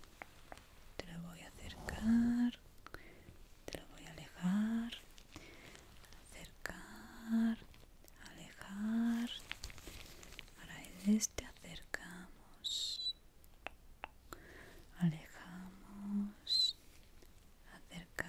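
A woman whispering softly, broken by short murmured syllables about every two to three seconds.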